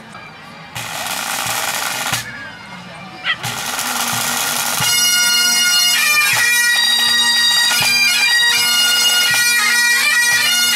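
Highland pipe band starting up: a snare drum roll about a second in and a short squeal as the bagpipes strike in, then a second roll. From about five seconds the bagpipes play a tune over their steady drones, with the drums beneath.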